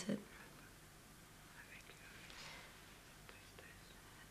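A woman's last spoken word, then a quiet pause: low hiss with a faint breath about two seconds in and a few soft clicks near the end.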